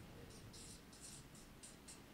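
Faint marker strokes on flip-chart paper: a quick series of short scrapes as letters are written.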